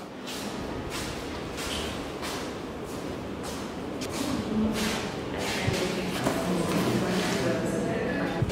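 Indistinct murmur of people talking in a large room, with scattered rustling and soft footsteps. The voices grow a little louder after about four seconds.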